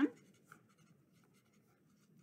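Felt-tip marker writing on a paper card: faint, scratchy short strokes as letters are drawn.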